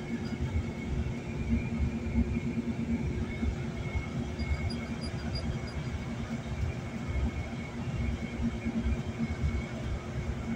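Road and engine noise heard inside a car moving at highway speed: a steady low rumble with a constant hum.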